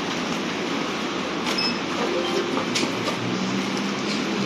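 Steady shop background noise while packaged items are handled at a checkout counter, with a few light clicks and a couple of short high beeps. A low hum comes in near the end.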